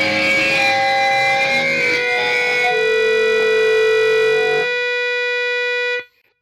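Distorted electric guitar music: a chord held and left ringing, its low end dropping away a little past the middle, then cut off abruptly at the end.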